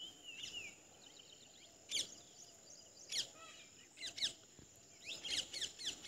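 Birds calling: short, sharp calls that sweep steeply down in pitch, one about two seconds in, more at three and four seconds, and several in quick succession near the end, over a faint steady high-pitched tone.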